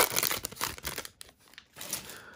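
A plastic trading-card pack wrapper being torn open and crinkled, crackling densely for about the first second, then dying away.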